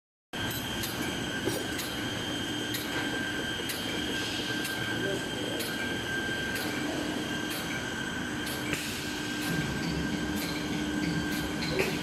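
Glue-laminating toilet paper and paper towel rewinder machine running: a steady mechanical whir with a high, even whine and a regular tick a little faster than once a second.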